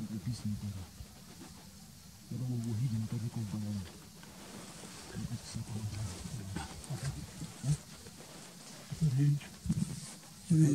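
Men talking quietly in low voices, in short stretches with pauses between.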